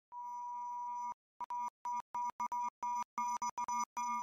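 Electronic beep tones of one steady pitch: a single long tone of about a second, a short pause, then a quick, uneven run of about ten short beeps, and a held tone starting again near the end.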